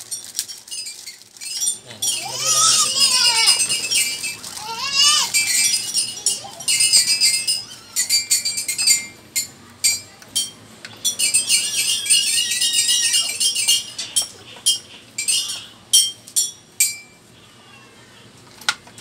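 Plastic packaging crinkling and small hard chair parts clicking and clinking as an office/gaming chair is put together, in dense rustling bursts with sharp knocks in between. A high, wavering voice-like call sounds twice within the first five seconds.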